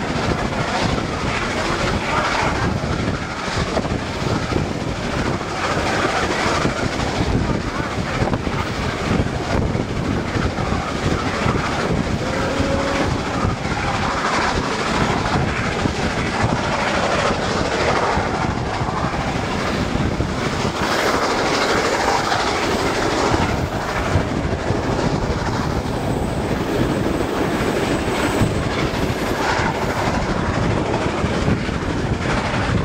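Steady, loud running noise of a steam-hauled passenger train at speed, heard from an open window of one of its cars: the wheels rumble and clatter on the rails throughout.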